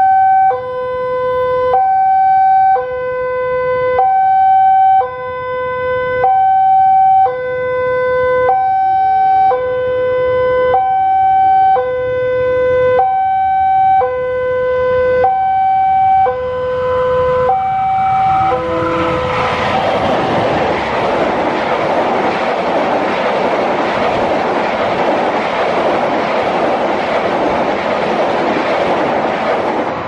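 Level-crossing warning alarm sounding a two-tone signal, alternating high and low about once a second, for a train approaching at speed. About eighteen seconds in, the alarm is drowned by a loud steady rush of the train passing fast over the rails.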